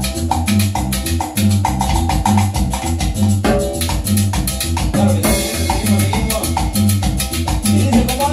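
A small live band playing a Latin dance tune: an electronic keyboard carries a repeating bass line and melody over timbales with a steady beat. A cymbal crash comes about five seconds in.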